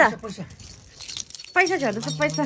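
A bunch of metal keys jangling and clinking, between short exclamations of voice at the start and near the end.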